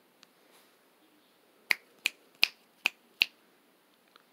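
Five finger snaps in a steady rhythm, about 0.4 s apart, starting a little under halfway through.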